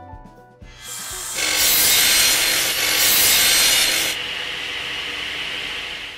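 Sound effect of a saw cutting through wood: a dense rasping noise swells in about a second in, is loudest for about two and a half seconds, then drops to a lower level and fades out at the end. The tail of a music track fades out at the start.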